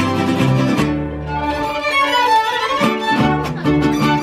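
Live mariachi band playing: violins carry the melody over rhythmically strummed guitars. The strummed rhythm drops out about a second in, leaving a held violin phrase, and comes back near the end.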